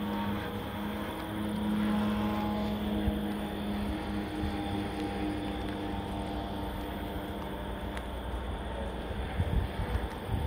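A vehicle's engine running steadily with road noise, heard from the moving vehicle; a few low gusts of wind hit the microphone near the end.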